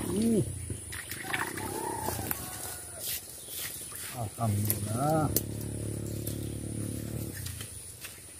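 A man's wordless voice: short hums and exclamations that rise and fall in pitch, the strongest pair about halfway through, as he lifts a hooked climbing perch out of the swamp on a long pole.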